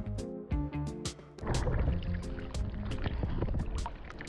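Background music with steady notes and a regular beat. About a second and a half in, water sloshing and splashing against a camera riding at the sea surface joins the music and stays with it.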